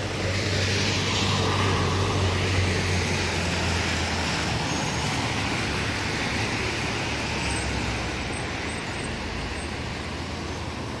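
Road traffic on a wet street: a low engine drone from passing vehicles, strongest in the first half, over the hiss of tyres on wet asphalt.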